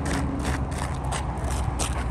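Steady low hum of an engine running, with a run of short clicks from footsteps on asphalt.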